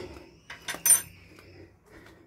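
A few short metallic clicks and clinks, the loudest about a second in.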